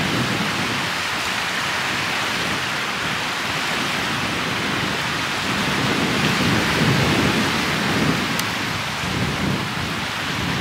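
Steady rushing noise of wind buffeting the microphone, with small lake waves washing onto a rocky shore; the low rumble swells and eases, strongest a little past the middle.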